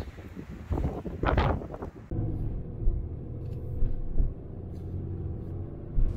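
Gusts of wind on the microphone, then, about two seconds in, the steady low drone of a pickup truck driving on a road, heard from inside the cab.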